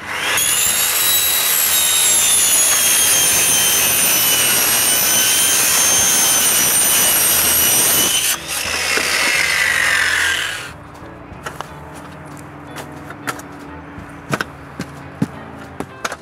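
Circular saw with a metal-cutting blade cutting through a foam-insulated door panel: a loud, steady, high whine that dips briefly about eight seconds in, then falls in pitch as the blade winds down and stops after about eleven seconds. A few light knocks and clicks follow.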